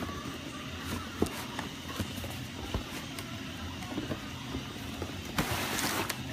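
A cardboard sneaker box being opened by hand, with a few light taps and knocks, then a loud rustle of tissue paper near the end as the paper is pulled back from the shoes. Steady household background noise underneath.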